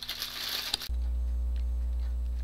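Plastic bag crinkling as it is handled and squeezed for about the first second, then an abrupt switch to a steady low electrical hum with a few faint ticks.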